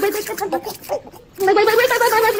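A boy's voice holding a drawn-out, wordless wavering 'ahh' with a fast quaver, like a gargle. It breaks off briefly in the middle and comes back louder about a second and a half in.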